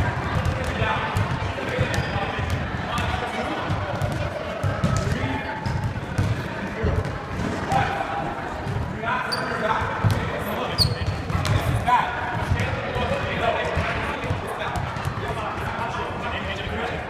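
Irregular thuds of balls bouncing on a wooden sports-hall floor, echoing in the big room, under the chatter of many voices. There are two short high sneaker squeaks about two-thirds of the way through.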